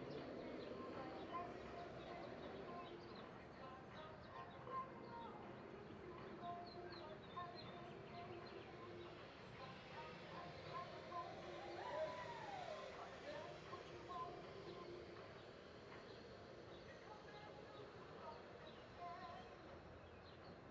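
Faint arena ambience: small birds chirping again and again over a low murmur of distant voices, with one longer falling call about twelve seconds in.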